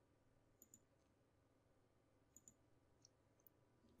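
Near silence with a few faint computer-mouse clicks, two quick double clicks about a second apart.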